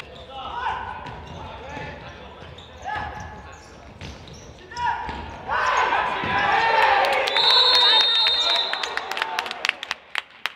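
Futsal game in a sports hall: players' voices and ball strikes on the wooden court, swelling into loud shouting around a chance at goal. A referee's whistle gives one long blast about three-quarters of the way through, and sharp ball knocks follow near the end.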